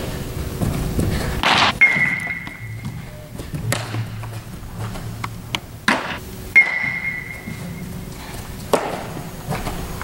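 Two hard cracks of a metal bat hitting balls, about five seconds apart, each followed by a short ringing ping. Other sharp knocks fall in between, near 6 s and 9 s.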